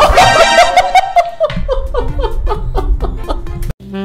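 A person's long held cry for about a second, then quick repeated laughter, over background music. It cuts off abruptly just before the end.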